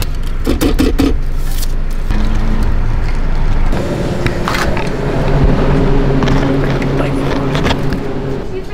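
A car engine idling, heard from inside the cabin, with a seatbelt being pulled across. After a cut about four seconds in, a steady hum of several held tones.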